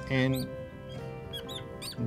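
Fluorescent marker squeaking in short chirps on a glass writing board as it writes, several times over the second half, under a soft, steady music bed.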